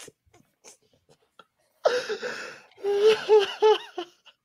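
A person laughing hard: a breathy wheeze about halfway through, then three short pitched hoots of laughter near the end.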